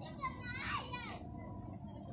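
Faint children's voices, a short burst of sound between about a quarter of a second and one second in, over steady low background noise.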